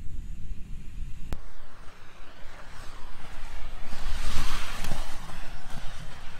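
Inline speed skates rolling fast on a concrete track as the skater sweeps past close by: the hiss of the wheels swells about four seconds in, then fades. A low rumble runs underneath, with a single click just over a second in.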